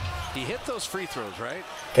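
Basketball game audio at low level: a basketball dribbled on a hardwood court, with short gliding squeaks and a faint broadcast voice underneath.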